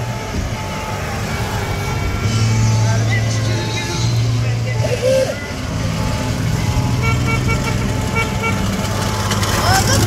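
Golf carts passing in a parade: a steady low motor hum, with people calling out and short horn beeps near the end.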